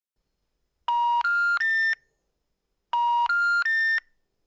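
Three steady electronic tones rising in pitch, a third of a second each, sounded twice with a second's gap between: the telephone network's three-tone special information tone, which signals that a call cannot be completed.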